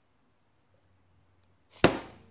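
Near silence, then a single sharp knock near the end that dies away quickly.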